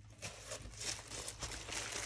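Plastic wrapper around a roll of thick clear vinyl crinkling as it is picked up and handled, a run of soft, irregular rustles.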